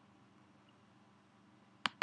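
Faint room tone, then near the end a sharp computer mouse-button click, followed at once by another, the clicks that finish a path in a drawing program.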